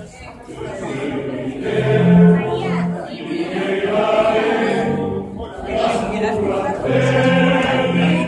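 A group of voices singing together in a church, with long held notes and lower voices joining in and dropping out.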